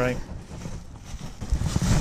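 Gloved hands slapping and brushing at trouser legs to knock off biting ants: a quiet stretch, then a cluster of muffled thumps and rustling about one and a half seconds in.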